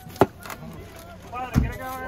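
A machete knocking on a plastic cutting board while cutting a red onion: one sharp knock about a quarter second in and a duller thump about a second and a half in, with people talking.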